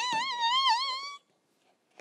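A woman's joyful "yay" that glides up into a very high, wavering squeal, held for about a second and then cut off abruptly.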